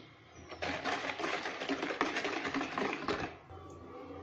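Wire balloon whisk beating flour into cake batter in a plastic bowl: rapid, even strokes clattering against the bowl, starting about half a second in and stopping a little after three seconds.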